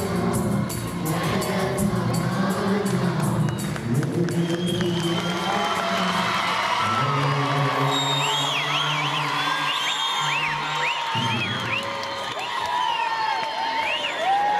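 A children's choir sings over backing music with clapping in time. About halfway through, the music settles on a held note while the audience cheers, and high sliding whoops and shouts rise over it.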